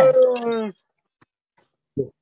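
A long, dog-like howl, sliding slowly down in pitch, that dies away under a second in.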